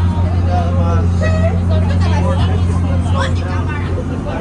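A boat's engine droning steadily at a low pitch, with people talking over it.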